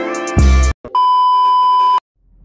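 Background music with a beat cuts off about a third of the way in, and a steady, high electronic beep follows and holds for about a second, stopping abruptly.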